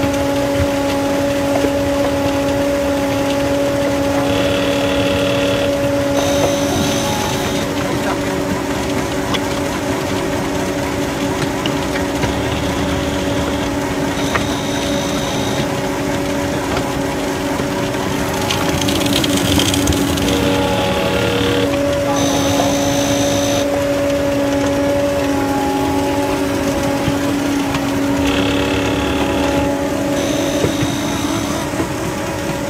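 Bay-Lynx volumetric concrete mixer running steadily as it makes a dry mix, its engine and drives giving a continuous hum with a brief louder, noisier swell about two-thirds of the way through.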